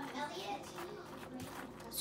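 Pecan halves shifting and clicking faintly as a hand spreads them across an unbaked pie crust in a foil pie pan.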